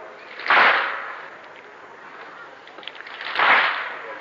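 A crowd of mourners striking together twice, about three seconds apart, each stroke a short smeared slap rather than one sharp crack: the collective chest-beating (latm) that keeps time in a Husseini latmiya.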